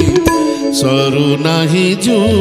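Bansuri bamboo flute playing an ornamented, wavering melody over accompanying instruments, with a few drum strokes near the start.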